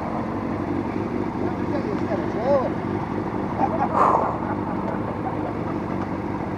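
Motorcycle engine idling steadily at standstill, with a brief louder noise about four seconds in.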